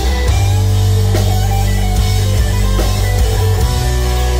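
Live rock band playing an instrumental passage: electric guitars holding sustained low notes over a drum kit, with a few drum hits.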